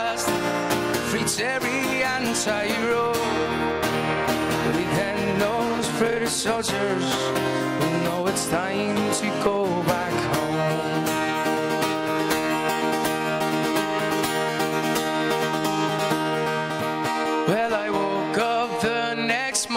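Live folk ballad: an acoustic guitar strummed under a man's voice holding long, wavering sung notes, the voice dropping away in the second half to leave mostly the guitar.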